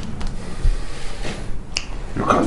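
A single sharp snap near the end, with a soft low thud a little past a third of the way in, over a steady low hum.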